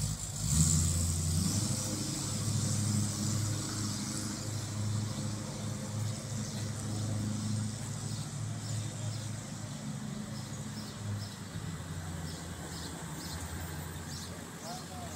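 A motor vehicle's engine running with a low steady hum. It swells about half a second in, then slowly fades over the following seconds.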